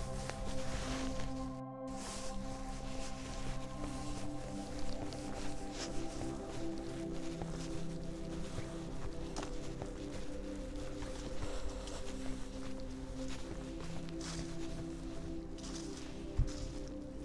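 Background music of slow, sustained chords that shift every few seconds, with faint footsteps underneath. The sound cuts out for a split second about two seconds in.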